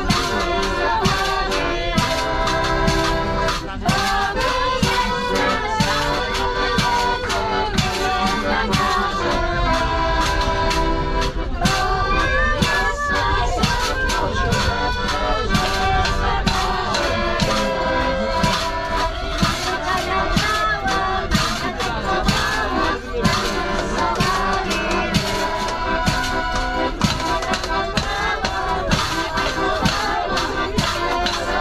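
Piano accordion playing a lively folk tune with people singing along, over a steady beat.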